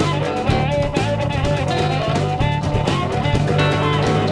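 Live blues band playing: harmonica lines over acoustic guitar, electric bass and drums.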